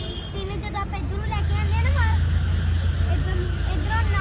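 Background voices with a steady low rumble underneath that grows louder about a second in.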